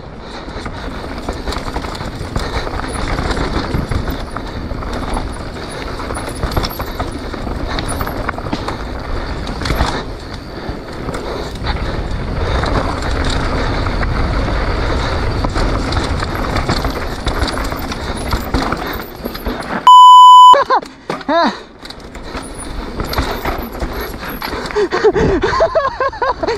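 A mountain bike ridden fast down a dirt jump line: steady rushing wind on the helmet-mounted microphone over tyre and trail noise, with the odd clatter. About twenty seconds in, a loud, single-pitched electronic beep lasts half a second.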